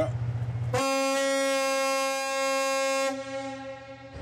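Ship's horn of the customs cruiser Borkum sounding one long, steady blast of about two seconds, starting just under a second in, under a low steady hum.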